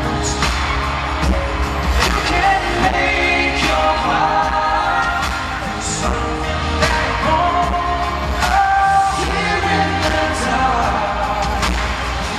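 Male pop vocals sung live into a microphone over a band accompaniment with a heavy bass and regular drum hits.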